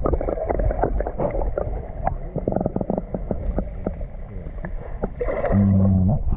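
Muffled underwater water sounds: a low rumble with many small clicks and crackles of bubbles and moving water, picked up by a camera held beneath the surface of a spring. A brief low hum comes in near the end.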